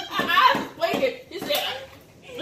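Women laughing and exclaiming in short bursts, dying down near the end.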